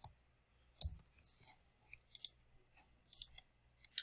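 A computer mouse clicking, several separate faint clicks spread through the moment as the on-screen document is clicked and scrolled.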